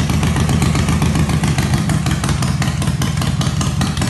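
Harley-Davidson V-twin motorcycle engine idling with a steady, even pulsing beat.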